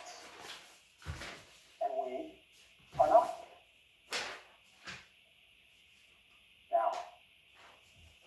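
A few short animal calls spaced about a second apart, with sharp clicks between them and a quiet gap past the middle.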